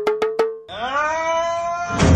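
Edited-in comedy sound effect: a rapid pulsing tone, about seven pulses a second, creeping upward in pitch, cuts off about half a second in. Then a single bright tone slides up and holds steady.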